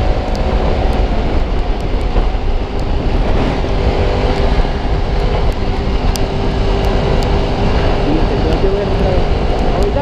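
Sport motorcycle engine running steadily at cruising speed, with heavy wind rush on the action camera's microphone.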